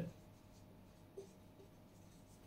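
Faint sound of a marker pen writing on a whiteboard, with one brief, slightly louder stroke about a second in.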